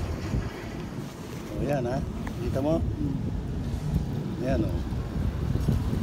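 Wind rumbling on the microphone, with a few short, faraway voice sounds about two, three and four and a half seconds in.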